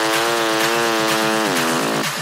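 Electronic dance music breakdown: a single held synthesizer note with a slight wobble, sliding down in pitch about a second and a half in, with no kick drum or bass under it.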